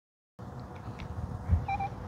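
Short electronic beeps from an OKM Rover UC ground scanner in use, two in quick succession near the end, over a low rumble, after a brief silent start.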